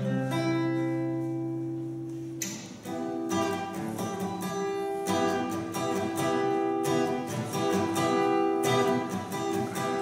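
Acoustic guitar played solo in a song's instrumental introduction. A chord rings out and fades over the first two and a half seconds, then picked and strummed chords carry on to the end.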